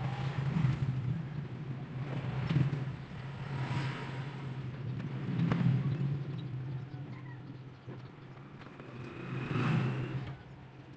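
A low, steady hum that swells and fades several times, with a few light clicks.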